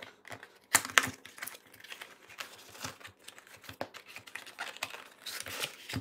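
A small cardboard product box being opened by hand: irregular rustling, scraping and clicking of card and paper packaging as the contents are slid out. The sharpest clicks come just under a second in.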